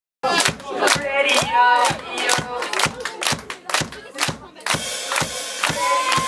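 Concert crowd clapping in time, about three claps a second, with voices shouting over the claps. A fuller band sound joins near the end.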